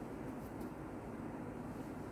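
Steady low rumbling background noise with no distinct events, with a couple of faint ticks about half a second in.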